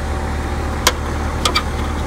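Steady low machine hum, with three short sharp clicks: one a little under a second in and two close together around a second and a half in.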